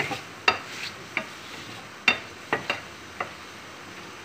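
Wooden spatula stirring chicken pieces in a metal frying pan, knocking and scraping against the pan several times at irregular intervals over a faint sizzle of chicken frying in butter.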